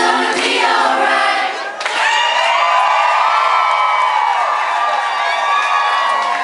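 Group singing with no band behind it, which stops about two seconds in. A live concert crowd then breaks into cheering and whooping.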